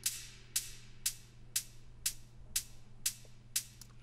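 Soloed closed hi-hat sample playing alone in a steady pattern, two short hits a second. A little reverb is being sent to it to give the hat some space.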